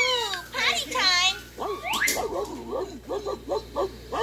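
Cartoon soundtrack played through a TV speaker: high, sliding character voices, then a quick run of short repeated sounds, about four a second, in the second half.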